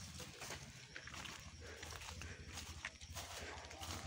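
Faint footsteps and rustling in dry leaf litter: a few soft, scattered crackles over a low steady rumble.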